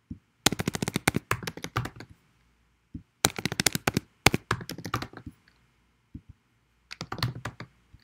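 Typing on a computer keyboard: three quick runs of keystrokes with short pauses between them.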